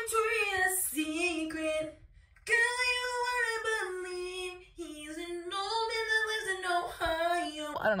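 A woman singing unaccompanied, holding long notes and sliding between them in three phrases with short breaks.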